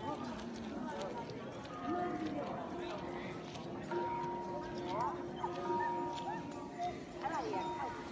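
Voices over long, steady held tones with short gliding notes.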